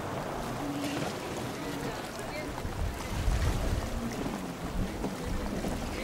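Wind buffeting the microphone over a steady wash of wind and water noise; the low gusty rumble grows heavier about halfway through.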